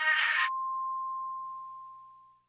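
The end of a 1990s Korean dance-pop song. The vocals and backing music stop about half a second in, leaving one steady high tone that slowly fades away.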